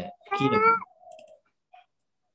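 A brief high-pitched vocal sound, held for about half a second and falling in pitch at its end, followed by a fainter, lower drawn-out sound.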